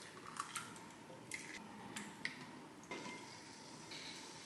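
Faint, scattered clinks and taps of a wire whisk against a ceramic bowl as a cracked egg is beaten, with a short scrape near the end.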